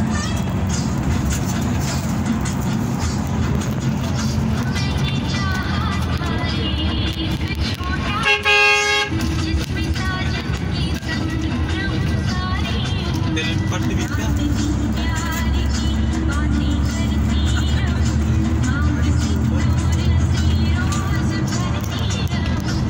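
Music with singing over the steady low drone of a bus engine and road noise. About eight seconds in, the bus's horn sounds once for under a second, the loudest thing in the stretch, warning a pickup ahead as the bus closes in to overtake it.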